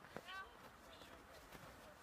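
Near silence: faint outdoor room tone, with one small click and a brief, faint voice fragment in the first half second.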